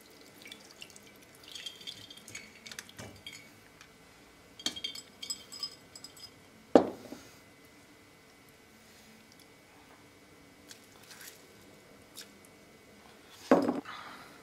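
Orange-liqueur infusion dripping and trickling through a metal mesh sieve as the soaked orange pieces are tipped from a glass jar and squeezed by hand, with small clinks of glass and metal. Two sharp knocks stand out, one about halfway and one near the end.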